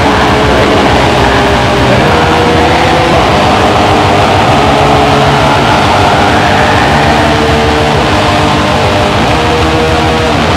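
Black metal recording: dense distorted guitars over fast drumming, loud and unbroken.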